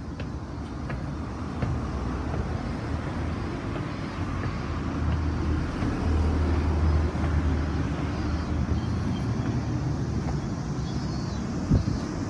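Steady street traffic noise of passing road vehicles, with a low rumble that grows louder around the middle and then eases.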